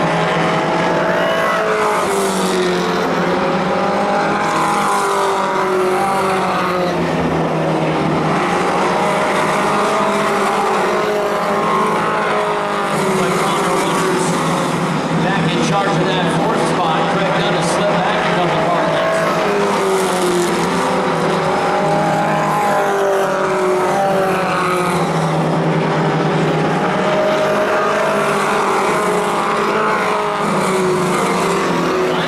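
A field of four-cylinder Pro Stock race cars running laps on a short oval track. Several engines are heard at once, their pitch rising and falling again and again as the cars accelerate and lift through the turns.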